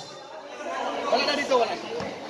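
Crowd chatter from spectators at a basketball game, several voices talking at once.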